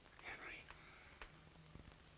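Near silence: the hiss of an old film soundtrack with a faint low hum. A faint breathy vocal sound comes about a quarter second in, and a few faint clicks follow.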